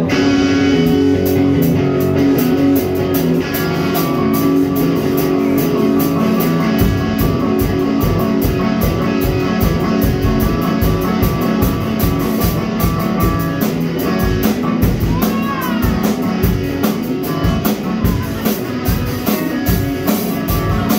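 Live rock band playing an instrumental opening: electric guitar, keyboard and drum kit starting together at once. The bass drum beat fills in about seven seconds in, and a sliding note bends down and back up at about fifteen seconds.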